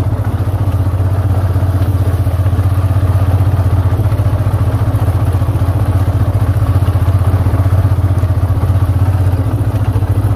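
Motorcycle engine running steadily at low speed as the bike is ridden slowly, a constant low engine note with a fast, even beat.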